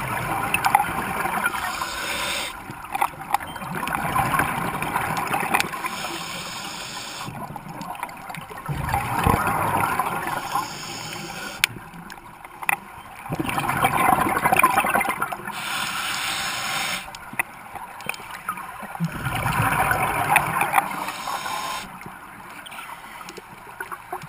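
Scuba diver's regulator breathing underwater: a hiss on each inhale, then a gurgling rush of exhaled bubbles, about five breaths in steady rhythm.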